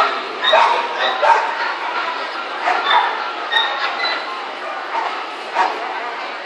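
Dogs barking and yipping in short, irregular bursts over a steady hubbub of voices.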